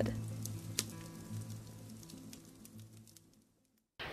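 A wood fire crackling in a sauna stove, with scattered sharp pops, under background music that fades out. Both die away to silence about three seconds in.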